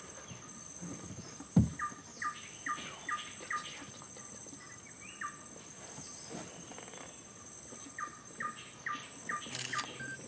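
A bird calling in runs of short falling notes, about two or three a second, over a steady high-pitched insect drone. A single low thump about one and a half seconds in.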